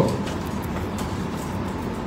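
Steady background room noise in a pause between speech, with a few faint ticks in the first second.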